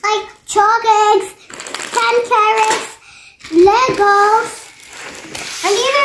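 A young girl singing in a high voice: short phrases on held, fairly level notes, broken by brief pauses.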